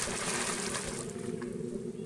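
Water splashing as a macaque plunges into a pool: a burst of spray and splashing that eases off after about a second into lighter sloshing.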